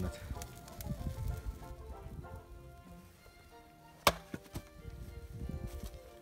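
Background music with steady held notes, and a single sharp axe chop into wood about four seconds in, the loudest sound.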